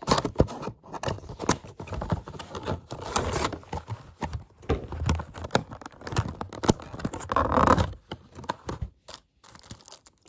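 Packaging of a model airliner being opened by hand: a cardboard box, a plastic bag and a clear plastic tray crinkling and rustling, with sharp clicks and scrapes, dying away about a second before the end.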